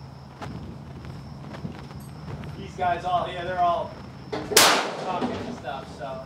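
A single sharp rifle shot about three-quarters of the way in, the loudest sound here, with a brief echoing tail; a voice is heard just before it.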